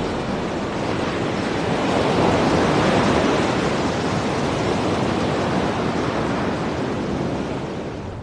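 Open-sea waves washing: a steady rushing that swells a couple of seconds in and eases off near the end.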